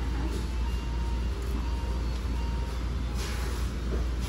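Steady low rumble of room background noise, with faint music and a thin held tone in the first half.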